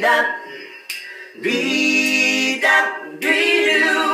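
Multi-tracked a cappella male voices singing in close harmony, swelling into a loud held chord about a second and a half in and another near the end, with a few short sharp clicks of percussion.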